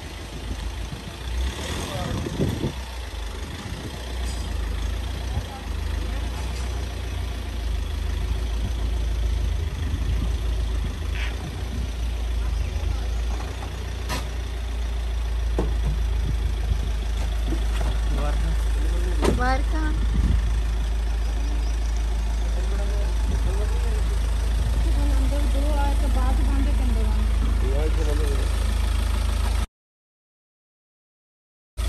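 Mahindra Scorpio SUV's diesel engine running at low speed with a steady low rumble as the vehicle is driven slowly, with a few sharp clicks and people's voices over it.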